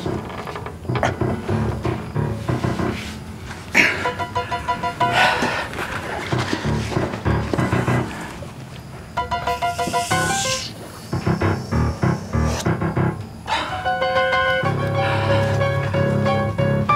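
Background music in short runs of pitched notes, with a couple of swishing effects about four and ten seconds in.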